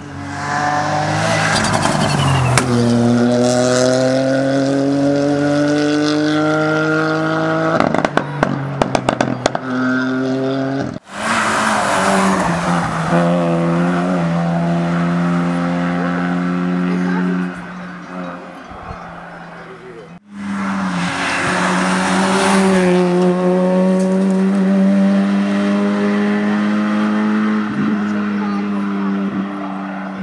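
Competition cars accelerating hard up a hillclimb course, engines revving high and rising in pitch through repeated gear changes. There is a burst of sharp crackles about eight to ten seconds in. The sound breaks off abruptly twice as one car's run gives way to the next.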